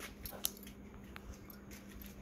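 Quiet room tone with a faint steady hum and a few soft clicks, the clearest about half a second in.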